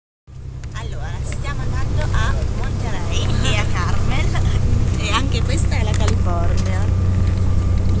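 Steady low rumble of a moving bus, heard from inside the cabin. It fades in over the first two seconds, with voices talking over it.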